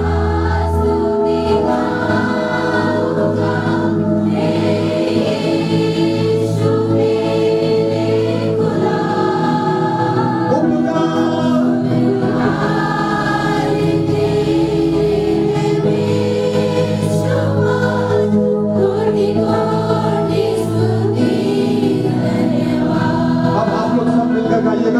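A congregation singing a praise and worship song together over steady musical accompaniment.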